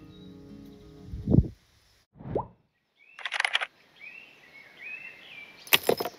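Background music with held chords ends about a second in with a loud downward whoosh. After a short silence come a second falling whoosh, a hissing swoosh, a few faint gliding tones and a sharp burst near the end: the sound effects of an animated title transition.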